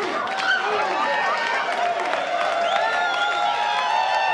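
Comedy-club audience laughing at a punchline, many voices at once, with scattered clapping.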